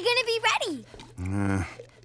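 Cartoon pug characters' voices making wordless sounds: a high, drawn-out whine that slides down and stops about half a second in, then a short low hum from a deeper voice.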